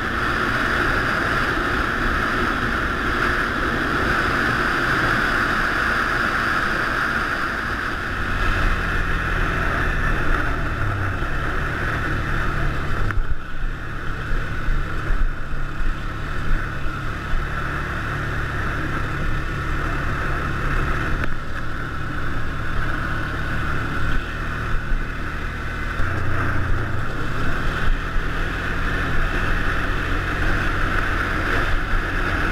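ATV engine running as the quad rides along a gravel trail, with wind noise on the camera microphone. The engine pitch steps up or down a few times, and the loudness turns bumpy over rough ground in the second half.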